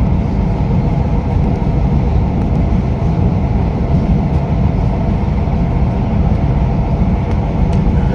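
Steady low rumble of a moving passenger train, heard from inside the carriage as it runs along the track.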